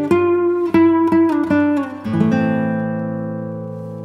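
Background music: an acoustic guitar picking single notes, about three a second, then a chord struck about halfway through that rings and slowly fades.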